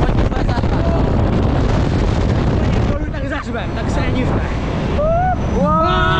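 Loud wind rushing and buffeting over the microphone of a camera carried on a fairground thrill ride as it swings riders high through the air, with riders shouting. Near the end a rider starts a long, rising scream.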